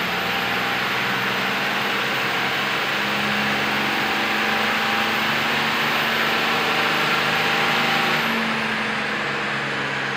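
VP44-injected 5.9 L 24-valve Cummins diesel running at high, fairly steady revs under load on a chassis dyno. A very high thin whine over the engine falls in pitch near the end.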